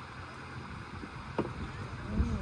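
Steady rushing background noise with a low rumble, and a single short knock about one and a half seconds in.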